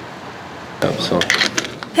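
Metallic clicks and clinks from a bicycle's Billibars detachable handlebar being handled. It is a quick cluster of sharp clicks with short ringing, starting about a second in after a steady low background hum.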